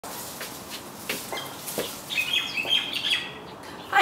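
A small bird chirping a quick run of short high notes from about two seconds in, over a few soft clicks and rustles of a leafy branch being handled.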